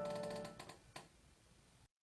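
The last piano chord dying away, followed by a couple of faint clicks, before the sound cuts off suddenly near the end.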